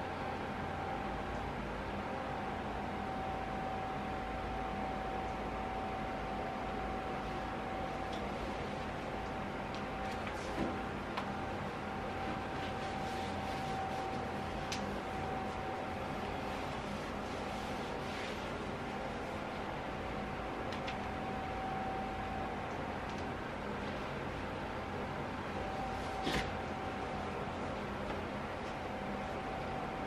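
An electric fan running steadily in the room, a constant whooshing hiss with a steady tone in it. Two brief rustles or knocks stand out, about a third of the way in and near the end, as clothes are pulled on.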